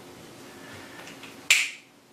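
Faint dry-erase marker strokes on a whiteboard, then a single sharp click about a second and a half in.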